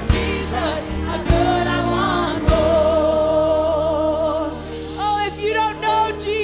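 A woman's lead vocal singing a gospel worship song over band accompaniment, holding one long note in the middle.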